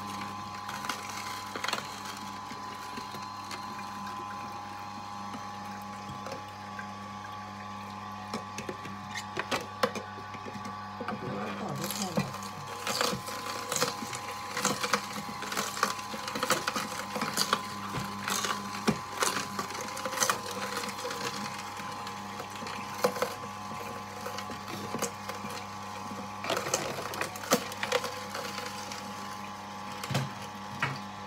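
Electric juicer running with a steady hum while carrot and ginger pieces crunch and crack as they are pressed through it. The cracking gets much busier from about ten seconds in.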